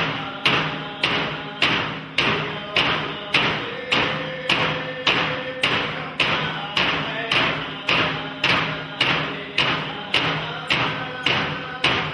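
Alaska Native frame drums beaten in a steady unison rhythm, a little under two strokes a second, each stroke ringing and dying away before the next, with voices singing along.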